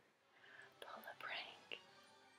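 Near silence: faint room tone with a few soft clicks and a brief faint whisper a little past the middle.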